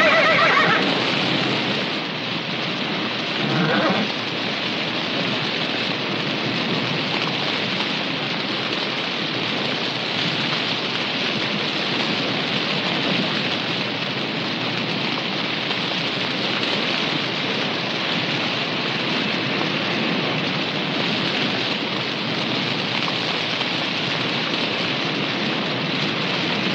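Forest fire burning: a steady noisy rush without a break. A horse whinnies at the very start, and a shorter call comes about four seconds in.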